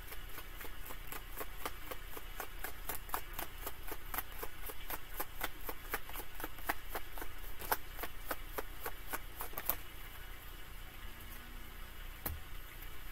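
Tarot deck being shuffled by hand: a quick, even run of cards tapping against each other, several a second, which stops about ten seconds in.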